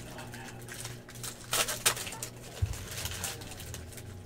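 A foil trading-card pack wrapper crinkling as it is torn open and the cards handled, with a couple of sharper crackles about a second and a half in and a soft knock shortly after, over a steady low hum.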